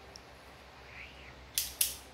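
Utility knife scoring the back of a luxury vinyl plank: two quick, sharp strokes about a second and a half in, after a quiet stretch.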